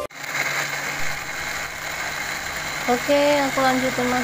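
Small electric blender with a grinder cup running steadily, grinding spice paste; a voice comes in over it near the end.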